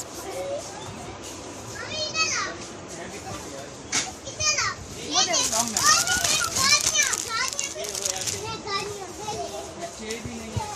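Children's voices: high-pitched calls and squeals over a background murmur, loudest and busiest between about five and eight seconds in, with a single sharp click near four seconds.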